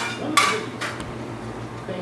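Metal baking sheet of biscuits clattering on the stovetop: three short scrapes and clinks within the first second, the middle one the loudest.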